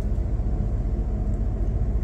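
Steady low drone of the Fleming 85 motor yacht's diesel engines running under way, heard inside the wheelhouse.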